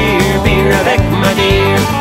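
Upbeat country song in an instrumental passage between sung lines: guitars, bass and drums playing a steady beat, with a lead line sliding in pitch above them.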